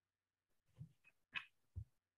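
Near silence, broken by three faint, very short sounds in the second half.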